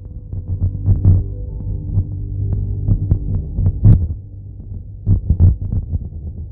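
Low rumble inside a car's cabin in slow traffic, broken by irregular dull thumps, with a few faint held notes in the middle.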